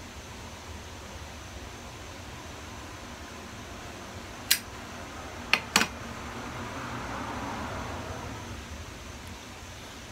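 A tobacco pipe being lit and smoked over a steady low hum. Three sharp clicks come between about four and a half and six seconds in, then a soft breathy exhale of smoke.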